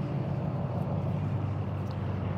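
Steady low hum of an idling engine, even and unchanging.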